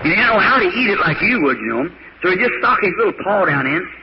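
Speech only: a man preaching a sermon, talking quickly with only brief pauses.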